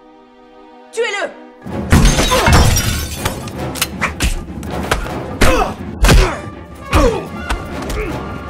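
Film soundtrack of a fistfight: a quiet held music chord, a loud falling shout about a second in, then from near two seconds a dense run of punches, thuds and crashes with shouts and grunts over music.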